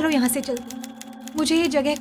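A woman speaking in a frightened, pleading voice over a rapid, even mechanical clatter of printing machinery running.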